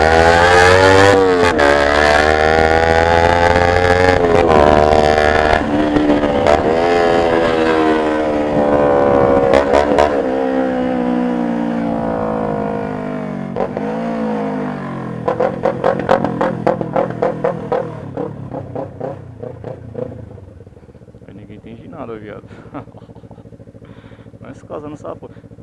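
Kawasaki Ninja 250R's parallel-twin engine accelerating through several gear changes, its pitch climbing and then dropping at each shift. About fifteen seconds in, it comes off the throttle with a rapid pulsing and runs quieter near the end.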